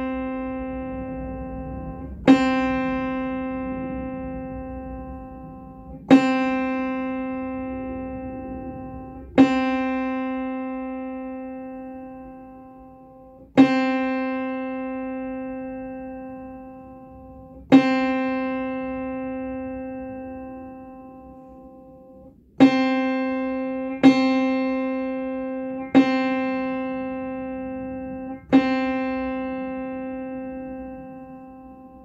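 Upright piano being tuned: a single mid-range note struck over and over, nine times, while the tuning lever sets the string's pin. Each strike rings and fades slowly; the strikes come every three to five seconds, then closer together near the end.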